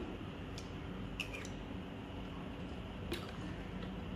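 Quiet eating sounds: a few faint clicks of a metal spoon against a ceramic bowl, one about a second in with a short ring, while fruit is eaten.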